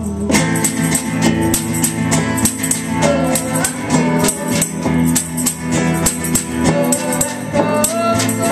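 Live acoustic band playing: acoustic guitar strummed under tambourine jingles and a hand drum keeping a steady beat.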